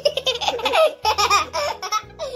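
A young boy laughing loudly and hard, in rapid high-pitched bursts.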